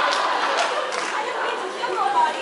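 Indistinct chatter of several voices in a large hall, slowly fading, with a few faint knocks in the first second.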